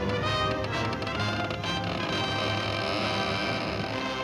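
Cartoon soundtrack music: a studio orchestra playing a lively score, with a few sharp percussive hits in the first second or so.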